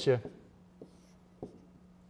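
Stylus writing on a touchscreen smartboard: two soft taps against the screen, the first a little under a second in and the second about half a second later, over a faint steady hum.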